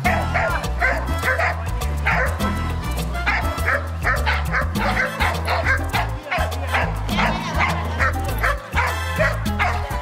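A dog barking in quick, repeated barks over background music with a steady, stepping bass line.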